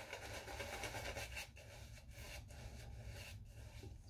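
Synthetic shaving brush rubbing shaving-soap lather onto a stubbled face: faint, soft scratchy strokes of the bristles on the skin, a little louder in the first second.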